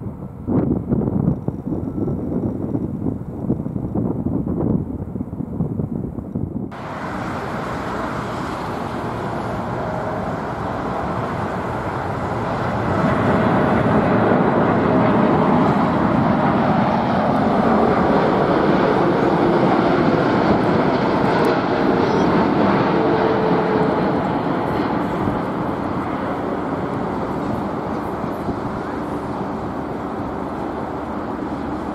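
Boeing 747-400 climbing out after takeoff, a low engine rumble with gusts of wind on the microphone. After a cut about seven seconds in, a Boeing 747-8's GEnx engines on approach: steady jet engine noise with a faint tone, swelling about thirteen seconds in and slowly fading toward the end.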